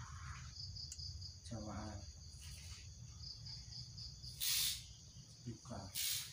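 A cricket trilling in two short bursts, a high pulsing chirp, over a low steady hum. A brief murmur of a voice comes about one and a half seconds in, and a short loud hiss about four and a half seconds in.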